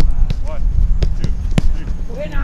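A few sharp thuds of soccer balls being struck on an artificial-turf training pitch; the loudest comes about one and a half seconds in.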